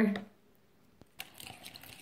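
Faint clicks and scrapes of a plastic spoon stirring thickening green slime in a plastic cup, starting about a second in after a brief near silence.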